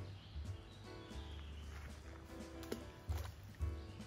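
Background music with a short, sharp plop about two and a half seconds in, as a thrown stone drops into a duckweed-covered canal.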